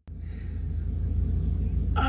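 Road and engine noise inside the cabin of a moving car or truck: a steady low rumble with an even hiss above it, slowly getting louder over the first second and a half.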